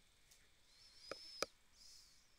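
Near silence with two short clicks about a second in, a third of a second apart, and a faint high tone just before them.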